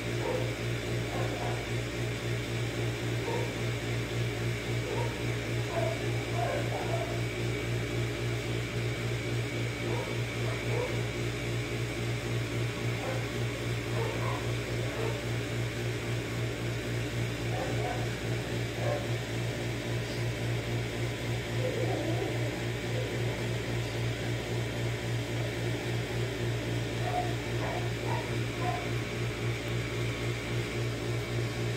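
A steady low machine hum, like a fan or appliance running, with faint short sounds coming and going above it.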